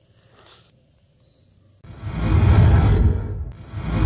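Faint steady high tone, then about two seconds in a loud rushing whoosh with a deep rumble rises, fades, and comes again at once.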